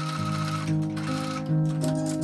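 Electric sewing machine running, its needle stitching through layers of cotton fabric, over soft background music with sustained notes.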